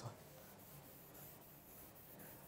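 Faint scratching of chalk on a blackboard as a small graph is drawn.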